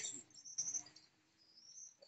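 Faint high-pitched chirping from a small animal, with a short rising call near the end.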